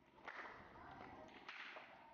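A cricket bat strikes a ball in net practice: a sharp crack about a quarter second in, then a second sharp knock about a second later. Both are faint.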